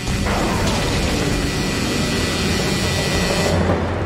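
A booming, rushing sound effect for dragons bursting up out of the ground, a dense noisy roar over steady background music. The hiss on top drops away about three and a half seconds in.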